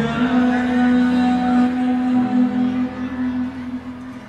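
A singer holding one long note into a microphone over a backing track, fading out near the end.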